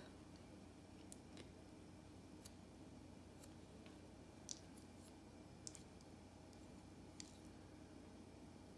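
Near silence with about seven faint, scattered clicks: the ridged edge of a shell being pressed and scraped into the base of an unfired clay vase to texture it.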